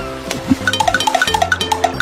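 Background music for a children's cartoon with sustained notes. From a little before the middle it carries a quick, even run of short pitched blips, about six or seven a second, after a brief low thud.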